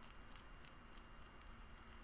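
Near silence: hands rolling a ball of polymer clay between the palms, heard only as faint rubbing and a few light ticks over low room hiss.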